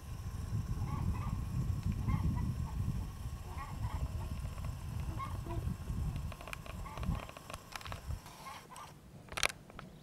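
Domestic fowl calling in short, repeated calls, roughly one every half second to a second, over a steady low rumble. A sharp click near the end.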